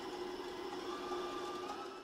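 Electric stand mixer running at a steady speed, beating softened butter with chopped herbs and seasonings.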